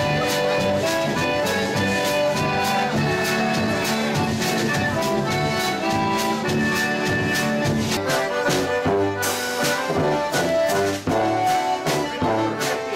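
Live polka music: a button concertina playing the tune over acoustic guitar accompaniment with a steady beat. About 11 seconds in, the music breaks off and switches to another group of concertinas playing.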